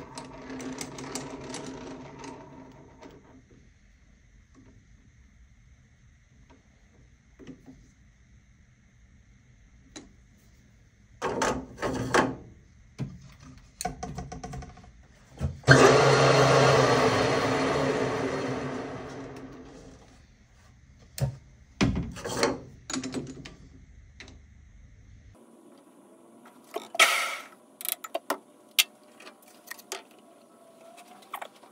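Workshop handling sounds around a metal lathe: scattered clanks and knocks of metal parts and tools, and a louder machine noise that starts suddenly and fades away over about four seconds.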